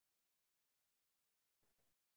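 Near silence on a quiet video-call line, broken only by two very faint, brief blips of noise near the end.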